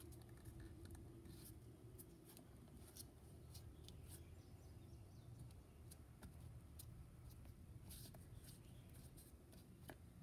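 Near silence: faint handling noise as a leather valve is worked into the cast-iron base of a pitcher pump, with a scatter of small soft clicks.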